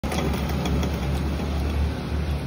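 Electric wood lathe running with a steady low hum while a wooden churning-stick handle is held in it, with a few light clicks in the first second or so.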